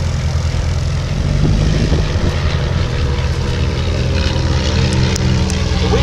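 Two light piston-engined trainer aircraft, a Miles Magister and a de Havilland Chipmunk, each with a de Havilland Gipsy Major four-cylinder inline engine, flying past together. Their engines and propellers make a steady drone.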